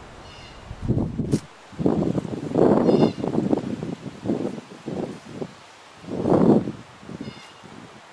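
Leaves and vines rustling close to the microphone in irregular bursts, loudest about three seconds and six seconds in.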